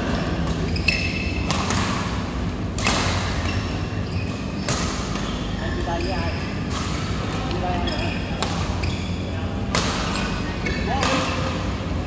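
Badminton rally: rackets striking the shuttlecock in sharp hits about every one and a half to two seconds, with voices in the hall over a steady low hum.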